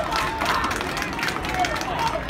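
Spectators at a baseball game clapping and calling out after a strikeout, scattered claps over a murmur of crowd voices.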